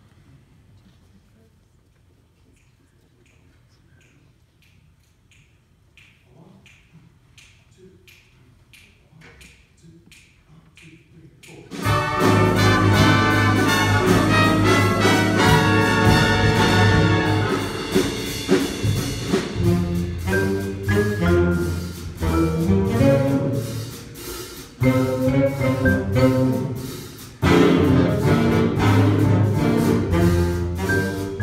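Faint, regular ticks about two a second that grow louder. About twelve seconds in, a jazz big band of saxophones, trumpets and trombones enters loudly and plays on.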